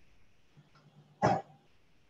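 A single short cough about a second in, against faint low room hum.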